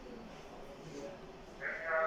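After a quiet stretch, a drawn-out pitched call begins near the end, like an animal bleating.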